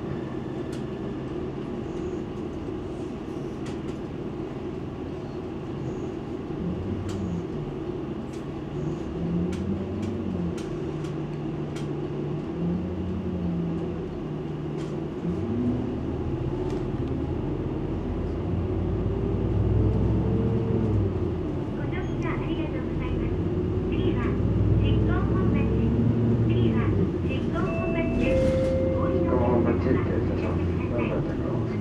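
People's voices talking over a steady low mechanical rumble; the voices grow louder in the second half.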